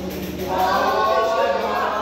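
A group of voices singing together in chorus, a capoeira song, swelling in about half a second in.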